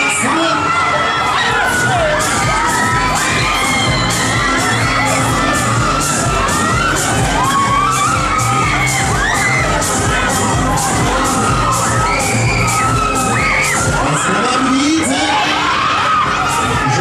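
Riders on a spinning Break Dance fairground ride screaming and shouting over loud dance music from the ride's sound system, which has a steady thumping beat.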